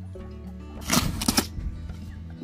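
Background music, with packing tape being ripped off a cardboard box about a second in: a short, loud tearing rasp lasting about half a second.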